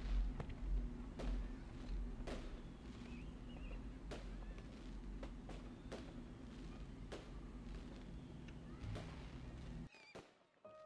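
Faint background noise with a low hum, broken by sharp clicks at irregular intervals, roughly one or two a second.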